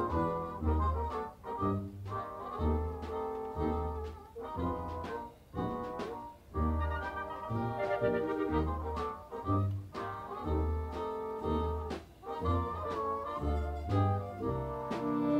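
Military concert band playing a Broadway show-tune medley live: brass carries the tune over low bass notes about once a second.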